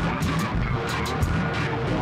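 Experimental electronic ambient music: a dense wash of samples over a low bass pulse, with several sharp clicks and crackles each second.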